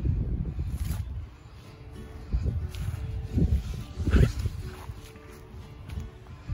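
Soft background music with steady held tones, under low rumbling noise on the microphone that swells and fades several times, loudest about four seconds in.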